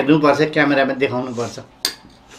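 A voice talking or exclaiming for the first second and a half, then, near the end, one sharp clink of a steel spoon against a ceramic plate.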